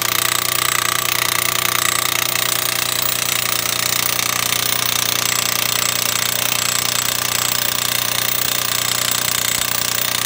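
Small electric power hammer driving a steel T-post into hard, rocky ground, hammering rapidly and steadily without a pause.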